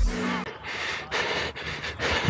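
Background music stops about half a second in, then a rugby player breathes hard in repeated rough gasps while running.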